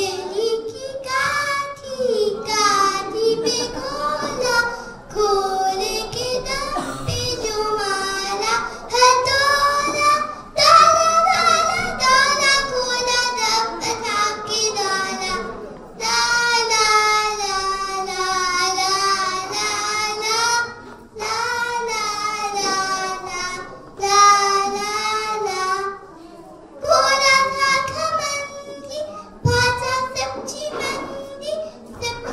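A young girl singing solo into a microphone, unaccompanied, in short phrases with brief pauses between them.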